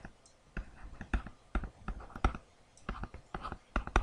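Pen stylus tapping and clicking on a tablet screen while handwriting: a string of irregular sharp ticks.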